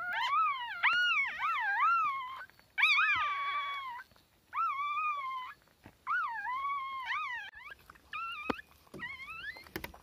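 Newborn puppies crying: about five high-pitched, wavering squeals that rise and fall in pitch, with short gaps between them.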